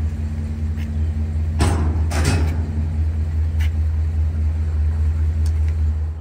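A steel RV stabilizer tripod is thrown into a metal dumpster, clanking loudly twice, about one and a half and two seconds in. Under it runs a steady low hum.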